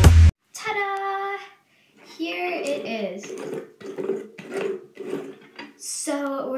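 Electronic background music with a heavy beat stops abruptly right at the start. It is followed by a person's voice: one held, sung note, a short pause, then a few seconds of voice rising and falling in pitch with no clear words.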